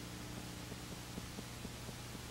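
Low steady electrical hum under an even hiss, with faint irregular ticks: the noise floor of a blank stretch of videotape playback with no programme sound.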